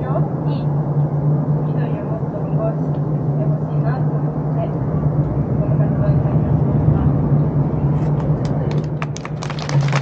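Crowd of protesters breaking into applause about 8 seconds in: scattered claps that quickly build into steady clapping, over a low steady hum and faint voices.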